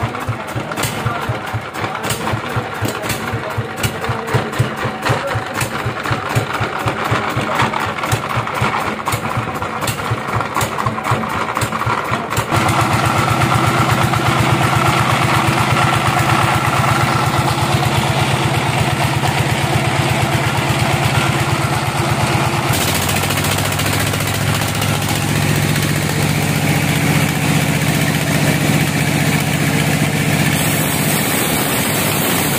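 Single-cylinder stationary diesel engine idling with a regular chugging beat. About twelve seconds in it gives way to a steadier, fuller machine drone from the band-saw mill it drives.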